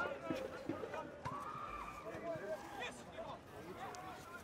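Faint open-air sound of a football match in play: scattered distant shouts and calls from players and spectators, with a few soft knocks.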